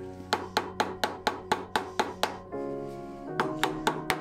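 Background music over a rapid, even series of mallet knocks on a wooden workpiece on the lathe, about four a second, in two runs with a short pause between them.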